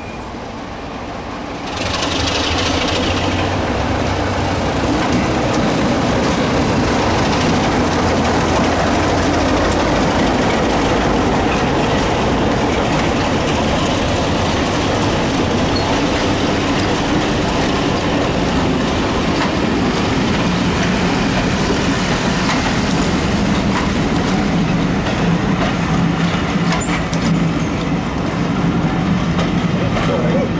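Diesel-hauled heritage train passing close by: a steady diesel engine note with the carriage wheels clattering over the rail joints, loud from about two seconds in.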